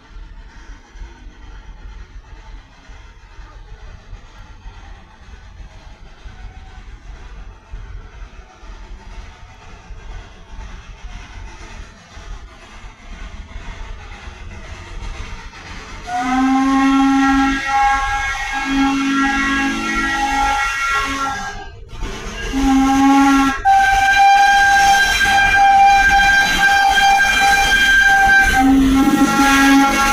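Baldwin steam locomotive no. 42 working uphill. It approaches as a low rumble that slowly grows, then about halfway through its steam whistle sounds in loud, several-note blasts: a long one, a short break, a short one, then a long one held as the engine passes, with steam hissing.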